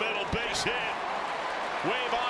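Baseball broadcast audio: a steady stadium crowd murmur with a faint announcer's voice, over a scatter of soft, dull low thuds.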